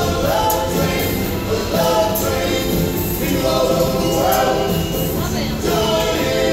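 Live music: several voices singing a gospel-style song over a backing with a steady beat.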